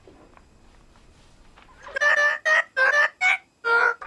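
Audio of an edited cartoon clip: after a quiet first half, a quick run of about six short, high, pitched sounds starting about two seconds in.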